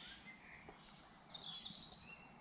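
Faint songbirds singing and chirping in woodland, with a brighter run of chirps about one and a half seconds in.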